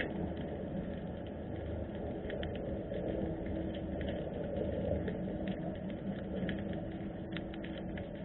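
Underwater harbour ambience picked up by a submerged camera: a steady low rumble with a faint hum, scattered with irregular short clicks and crackles.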